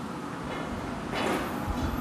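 Steady roar of a glassblowing hot shop's furnaces and burners, with a brief swell of hiss a little past halfway.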